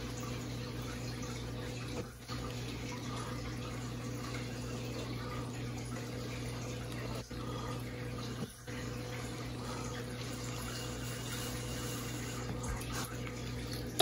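A steady rush of blown air across wet acrylic paint, pushing the paint out at the canvas edge, broken briefly about two seconds in and twice more past the middle.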